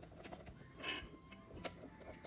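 Faint scraping and soft wet stirring of a silicone spatula folding whipped cream into a jelly mixture in a stainless steel bowl, with a slightly louder stroke about a second in.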